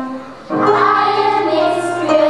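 Children's choir of girls singing with piano accompaniment; a short break between phrases just after the start, then the next phrase comes in and carries on.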